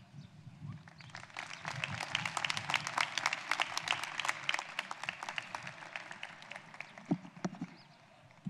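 Audience applauding: separate hand claps that build over the first couple of seconds, stay thick for a few seconds, then thin out and die away near the end.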